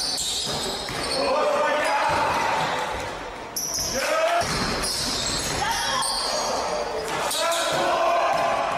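Live basketball game sound in a gym: a ball bouncing on the hardwood floor, mixed with players' shouts and calls, echoing in the large hall.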